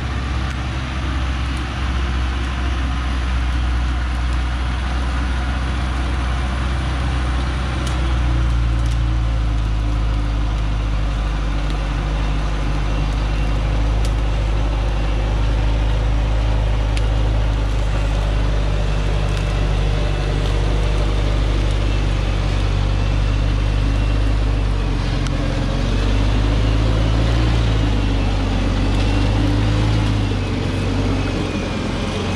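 Diesel engine of a DongFeng truck laden with acacia logs, running steadily at low speed as it crawls over a rough dirt mountain track, coming close and passing right by. The low engine note shifts a little about a third of the way in and again near the end.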